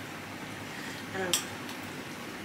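Metal spoon stirring coleslaw in a glass bowl: faint, soft wet mixing, with a short spoken "um" a little after a second in.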